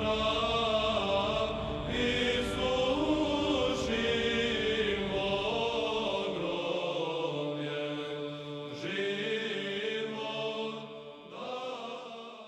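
Orthodox church choir chanting in slow, sustained voices, with a last chord entering near the end and beginning to fade.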